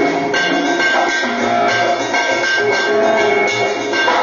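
Live band music with a drummer playing along under sustained pitched notes, at a steady loud level.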